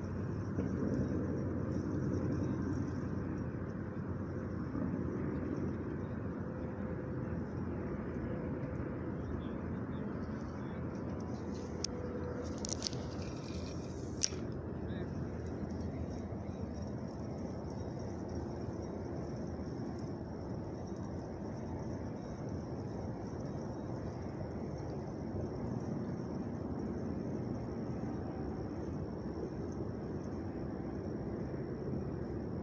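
A man laughs briefly at the start, then a steady low outdoor rumble runs on, with a short hissing burst and a couple of clicks about halfway through.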